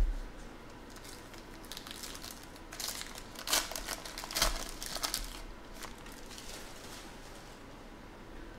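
A short thump, then a foil trading-card pack being torn open and crumpled by hand: crinkly crackling that builds from about a second in, is loudest near the middle, and dies away after about six seconds.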